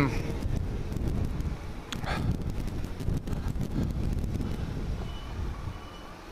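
Wind buffeting the microphone over the low rumble of a Kawasaki GTR1400 inline-four motorcycle on the move. The rumble is uneven and drops quieter near the end.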